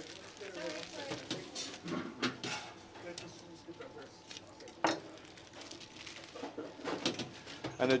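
Busy restaurant kitchen: faint background voices and the clatter of pans and utensils, with one sharp knock about five seconds in.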